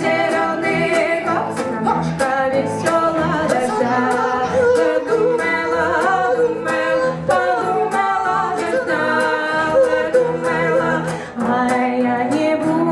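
Two women singing a Russian Gypsy song in duet, with wavering vibrato on held notes, over a strummed acoustic guitar and a bowed cello playing a steady beat.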